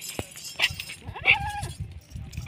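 A Barbari goat bleating once, a short arched call about a second in.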